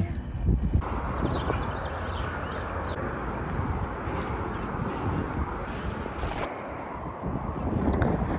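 Open-air noise of walking across a dirt-and-gravel lot: steady wind-like rush on the microphone with footsteps on the ground, and a brief hiss about six seconds in.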